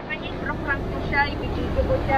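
Faint, brief snatches of talking over a steady low outdoor rumble.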